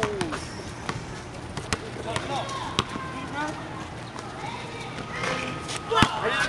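Voices of several people talking and calling out at a distance, with a few sharp knocks at irregular intervals.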